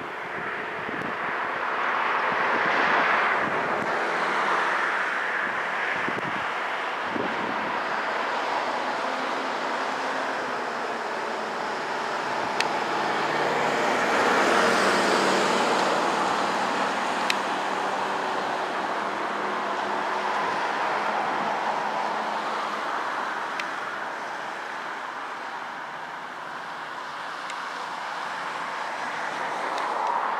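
Road traffic going by outdoors: a steady wash of passing cars that swells about three seconds in and again around fifteen seconds in.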